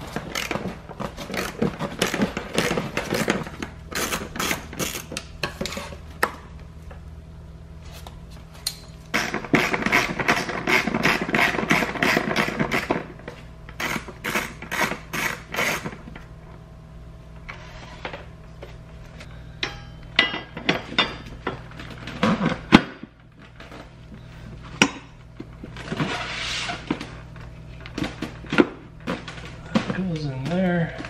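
Socket ratchet wrench clicking in quick runs of sharp ticks as the seat-rail bolts are turned, with pauses between runs. Soft background music runs underneath.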